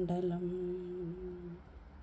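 A woman's voice holds one long, steady note at the end of a line of sung Malayalam verse recitation. The note fades out about a second and a half in.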